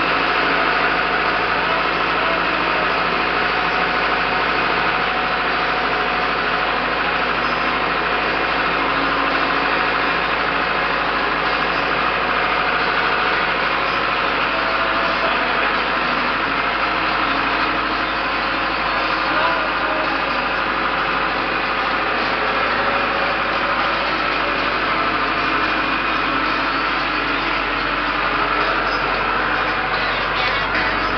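Tractor engine running steadily, heard from the driver's seat.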